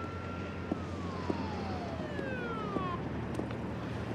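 A distant police siren: a single held tone that falls steadily in pitch for about two seconds, over a low steady background hum.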